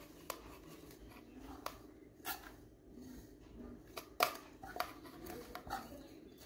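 A metal spoon scraping and tapping on a stainless steel plate as breadcrumbs are pushed off it into a steel bowl: a handful of irregular sharp clicks, the loudest about four seconds in, over soft scraping.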